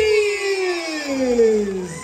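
A single voice holds one long, loud cry that slides steadily down in pitch for about two seconds.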